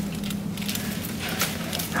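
A person shuffling and scraping over rocks into shallow water, with a couple of faint knocks about one and a half seconds in, over a steady low hum.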